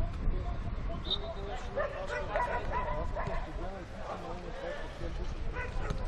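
Players' voices calling and shouting to one another across an outdoor football pitch, short calls coming one after another over a steady low rumble.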